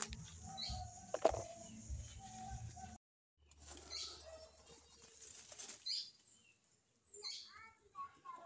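Faint outdoor background with a few short bird chirps and a sharp click about a second in; the sound drops out briefly about three seconds in.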